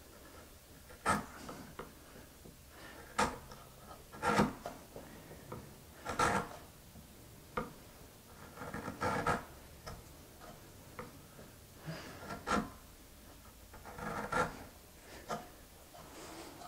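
Steel woodworking chisel driven with a mallet and pared through the waste wood between dovetails: about ten short, sharp knocks and scrapes, irregularly spaced a second or two apart.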